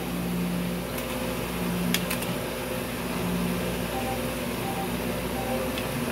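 Electronic slot machine sounding off during a spin: low electronic tones that come and go, a few clicks around one and two seconds in, and three short beeps near the end, over a steady background hum.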